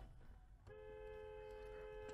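Car horn held in one steady blast of about a second and a half, starting under a second in; its two close notes sound together as on a dual-tone car horn.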